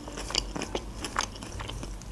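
Close-miked chewing of a mouthful of pickled ginger: a run of small, irregular crunches and wet mouth clicks.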